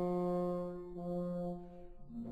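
French horn holding a long low note in an orchestral recording, re-sounded at the same pitch about a second in and fading away near the end.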